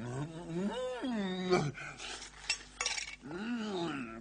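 Wordless vocal sounds: two long calls that each rise and then fall in pitch, with a few short clicks or knocks between them.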